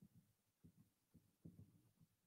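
Near silence broken by faint, soft low thuds a few times a second: a paintbrush dabbing paint onto a canvas on a wooden easel.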